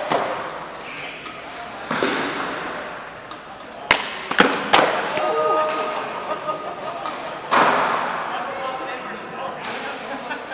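Skateboard tricks on a smooth concrete floor in a large hall. About six sharp pops and landing slaps of the board ring out, each with an echoing tail, over background crowd chatter.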